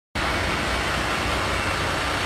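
2016 International ProStar semi truck's diesel engine idling steadily.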